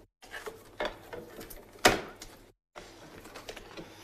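Craft materials being handled on a tabletop: a few light taps and knocks as card and plates are moved and set down, the sharpest knock about two seconds in. The sound cuts out to silence twice, briefly.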